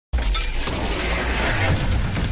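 Intro logo sound effect: a sound-designed sting that starts abruptly, with a dense, crackling noise texture over a heavy low bass rumble.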